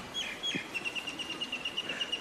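A bird chirping: a couple of single high chirps, then from about three-quarters of a second in a rapid, even trill of short notes at one pitch.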